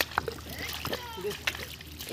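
Feet and hands splashing and squelching in shallow muddy water, a string of short separate splashes, with voices calling in the background.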